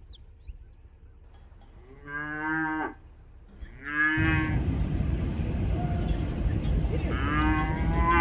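Cattle mooing three times: one long moo about two seconds in, a shorter one around four seconds, and another near the end, over a steady background noise that grows louder about four seconds in.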